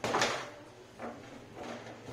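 Foosball table in play: the ball struck by the plastic player figures and the rods sliding and knocking in the table. A loud clack comes at the start, with a smaller knock about a second in.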